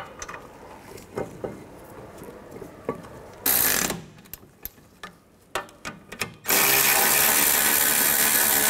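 Cordless electric ratchet running the caliper bracket bolts in: a short burst a little past three seconds, then a longer steady run from about six and a half seconds. Small clicks and knocks of the bolts and tool being handled come between.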